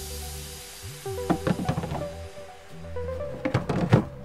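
Background music: held melodic notes with bursts of drum hits about a second in and again near the end.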